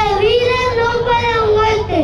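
A young child's voice holding one long sung note, wavering slightly, then falling off in pitch near the end.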